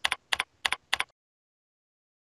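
Computer keyboard keys being typed: a quick run of about five keystrokes entering a short password, then the sound stops dead about a second in.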